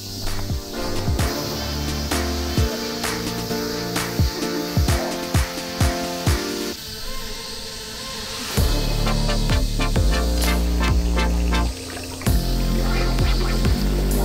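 Background electronic music with a steady beat; a heavy bass line comes in about eight and a half seconds in, dropping out briefly near twelve seconds.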